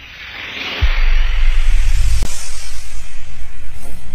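Logo-intro music and sound design: a whooshing swell rises for about a second, then a deep bass hit lands and sustains with a pulsing throb. A second sharp hit comes a little over two seconds in.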